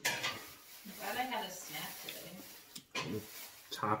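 Light clatter of tableware, with a low voice in the background.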